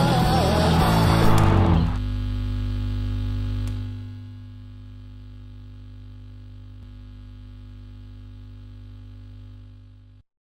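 Rock music with singing and drums that cuts off about two seconds in, leaving a steady low hum. The hum drops to a quieter level around four seconds in and then holds.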